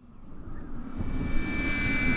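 A rumbling rush of wind-like noise swells up from silence and keeps growing louder, with faint held tones coming in during the second half.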